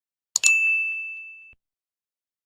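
Sound-effect double mouse click about half a second in, followed at once by a single bright bell ding that rings and fades over about a second, as when a subscribe button and notification bell are pressed.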